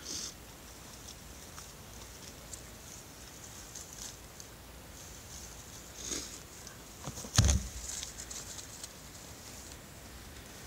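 Scattered rustling of dry leaves and grass as a coachwhip snake is pulled through the litter by its tail and lifted, with a single loud thump about seven seconds in.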